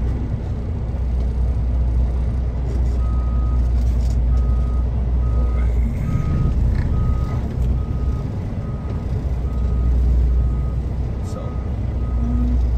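Semi truck's diesel engine running with a steady low drone heard inside the cab, while a reversing alarm beeps about twice a second from about three seconds in, as the truck is maneuvered to park.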